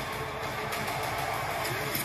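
Film trailer soundtrack: one steady held note over a dense, even wash of noise.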